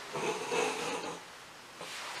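A man's faint, breathy snort of stifled laughter through the nose, lasting about a second, with a fainter breath near the end.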